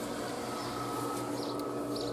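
Steady trickle of water from a small garden pond's spout, with a few faint, short bird chirps late on.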